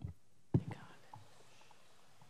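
Quiet room tone picked up by a meeting-room microphone, with a short faint whisper or breath near the microphone about half a second in.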